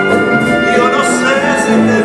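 Chamber orchestra playing a slow bolero, with a man singing over it and an acoustic guitar.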